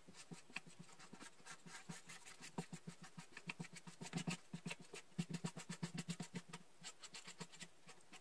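Black Sharpie marker scrubbing over the hollow plastic of a small blow mold in quick, small strokes as the boots are coloured black: a faint, rapid scratching.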